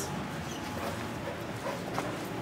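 Faint dogs in kennels giving a couple of brief, soft yips or whimpers over steady room noise.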